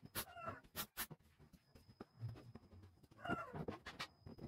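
Pneumatic brad nailer firing a few sharp shots into the plywood frame of a curved table, mostly within the first second or so. A short wavering pitched call is heard near the start and again near the end.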